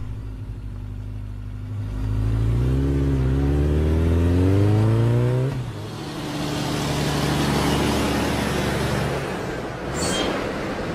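Motorcycle engine idling, then revving up in a pitch that rises for about three seconds, dropping back sharply about five and a half seconds in, then pulling away under a growing rush of noise that fades near the end.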